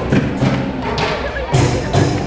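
Homemade bamboo tube instrument: tall upright bamboo tubes struck on their open tops with paddles, giving low pitched thumps in a rhythm as part of a band of homemade instruments. A bright hiss joins about one and a half seconds in.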